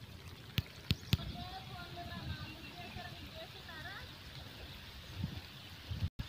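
Faint, distant voices, with three sharp clicks in the first second or so.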